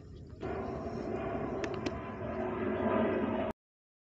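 Steady outdoor background noise with two faint clicks, cutting off abruptly to complete silence about three and a half seconds in.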